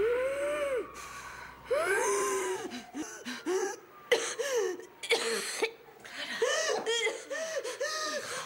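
A woman's high-pitched, distressed whimpering and sobbing gasps, short cries that come quicker and closer together in the second half.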